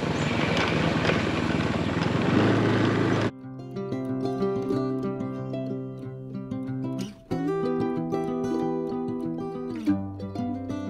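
Riding noise from a moving motorcycle for about three seconds, cut off suddenly and replaced by background music played on plucked strings.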